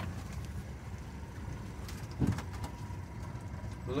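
Swamp tour boat's engine idling, a low steady rumble, with one brief low sound about two seconds in.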